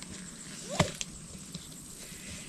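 Handling noise as a trail camera is fastened to a tree trunk: one sharp click a little before the middle, then a lighter tick a moment later, over quiet outdoor background.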